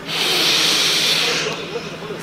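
A Qur'an reciter drawing a deep, hissing breath close to his microphone for about a second and a half before the next recited phrase.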